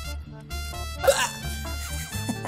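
Background music with held notes over a steady bass. About a second in, a short, loud sound sweeps upward in pitch over it.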